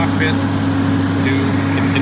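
Diesel engine of a ground air start cart (huffer) running with a loud, steady drone.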